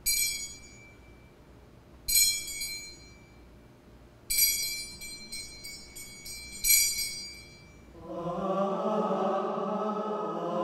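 Small metal altar bells rung in bursts: one strike at the start, another about two seconds in, a quick string of shakes from about four to six and a half seconds, and a last strike near seven seconds, each ringing out high and bright. About eight seconds in, a slow sung chant begins.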